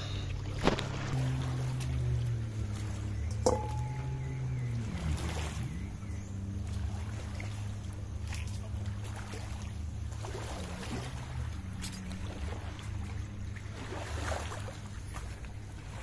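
A low, steady engine drone whose pitch dips and recovers about five seconds in, with a couple of faint clicks.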